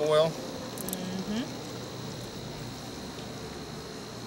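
Low background noise with a steady high-pitched whine, and a brief faint voice about a second in.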